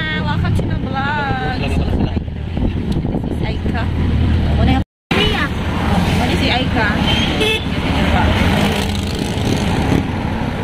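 Engine and road noise heard from inside a moving open-sided passenger vehicle, a steady low hum, with voices over it. The sound cuts out to silence for a moment about five seconds in.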